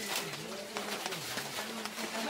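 A dove cooing: a few low, soft coos repeated through the moment.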